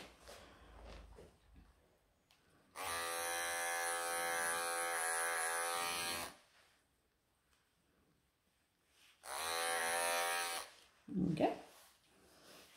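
Wahl electric pet clippers running in two bursts, about three and a half seconds and then about a second and a half, with a steady buzzing hum, shaving a tight mat out of a long-haired cat's coat.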